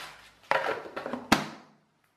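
Clatter of a clear plastic box holding wooden interlocking puzzles being handled on a table, with one sharp click a little over a second in.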